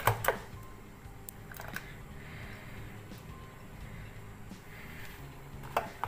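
Quiet kitchen handling: a glass bowl of thick tamarind-and-jaggery mixture is tipped out into a steel saucepan, with a few light clicks of glass and utensil against the pan.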